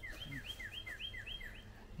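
A bird calling a quick run of repeated high two-part notes, each a short note followed by a lower downslurred one, about three a second, stopping shortly before the end.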